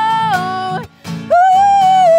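A female voice sings long held notes over a softly played steel-string acoustic guitar. The vocal line steps down in pitch, breaks off briefly about a second in, and comes back on a new held note.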